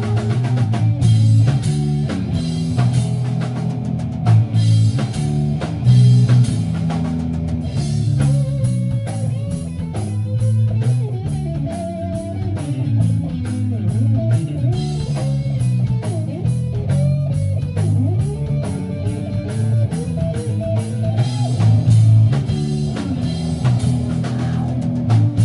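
A live rock band of electric guitar, bass guitar and drum kit playing loudly, heard from among the audience in a small room. A steady bass line and busy drumming run underneath, and a melody bends up and down in pitch through the middle.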